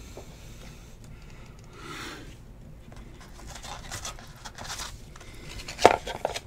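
Rustling, rubbing and scraping as a cardboard trading-card box and its wrapping are handled on a table, with a sharp click just before the end.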